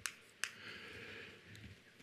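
Chalk on a blackboard: two sharp taps in the first half second, then faint scratching of chalk strokes for about a second.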